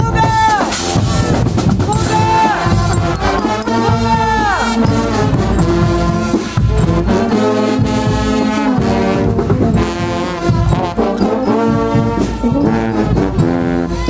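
Guggenmusik carnival band playing loud brass: trumpets, euphonium and sousaphones over a steady beat. Several held notes in the first few seconds end in a downward slide.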